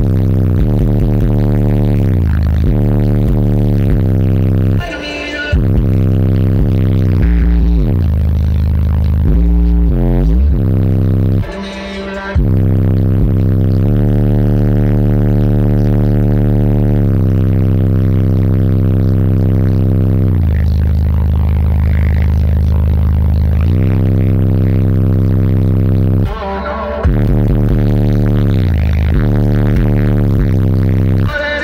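Car audio subwoofer system playing bass-heavy music at very high volume, heard inside the car's cabin: deep, long-held low notes that change pitch, with brief breaks three times.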